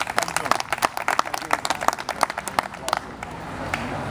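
Applause from a small audience, many separate hand claps in an irregular patter, dying away about three seconds in.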